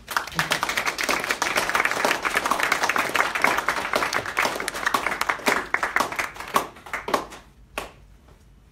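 Audience applauding, thinning out to a few last scattered claps near the end.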